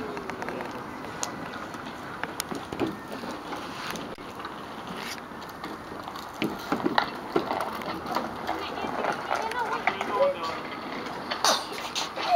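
Soft, indistinct voices with no clear words, and short taps and scuffs now and then, loudest near the end.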